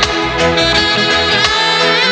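Instrumental break of a late-1980s reggae pop track: a saxophone plays a melodic line over the band's backing of drums and bass, with regular drum hits and no singing.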